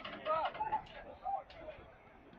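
Faint voices of footballers calling to each other during play, short shouts in the first second and a half.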